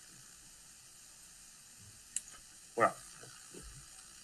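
Faint steady background hiss of a video-call audio feed, with one short click about two seconds in, then a single spoken word near the end.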